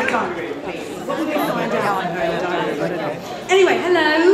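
Speech: voices talking in a large hall, overlapping chatter in the middle, with a single voice louder again near the end.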